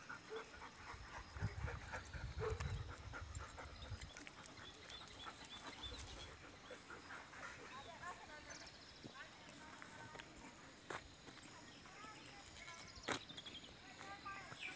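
Faint dog sounds from a group of Bhotiya dogs close by, with a low rumble in the first few seconds and scattered short clicks.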